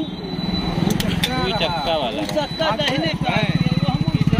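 Several people talking at once over an engine running, a low, even pulsing rumble that grows louder in the second half.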